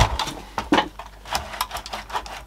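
Irregular clicks and knocks of a portable TV's slide-up chassis being handled and pulled up out of its cabinet, with the sharpest knock right at the start.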